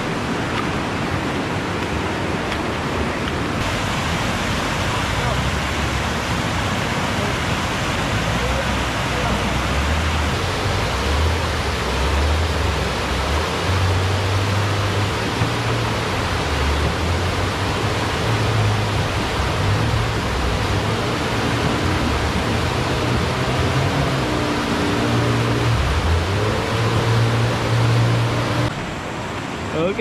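Steady rush of white water from a river rapid. From about eight seconds in, a low rumble rises and falls beneath it.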